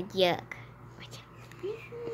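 A child's voice: a short spoken syllable at the start, then a quiet stretch with a few faint small clicks, and a drawn-out, hum-like voice sound beginning near the end.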